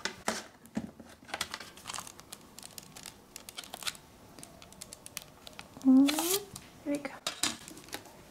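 Hands handling a plastic CD jewel case and sliding its paper booklet out from under the lid's tabs: an irregular run of short plastic clicks, scrapes and paper rustles.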